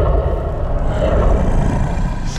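Loud, steady, deep rumble from the film trailer's sound mix, with no words.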